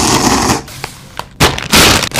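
A loud slurp of ramen noodles for about half a second, then, after a pause with a few small clicks, sharp crackles and a loud crinkling rush of a plastic instant-noodle packet being handled near the end.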